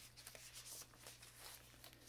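Faint, scattered rustles of paper yarn ball bands and a plastic bag being handled, over a low steady hum.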